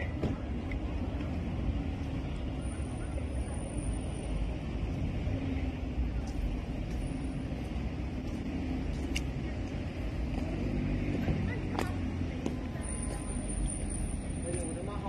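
Street ambience: a steady hum of distant road traffic with faint voices, broken by a few sharp clicks.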